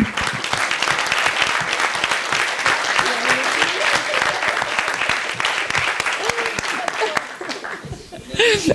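Audience applauding: dense clapping from many hands that dies away near the end, with a few voices underneath.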